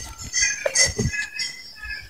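Birds chirping in short, high notes, with a few soft knocks of handling mixed in.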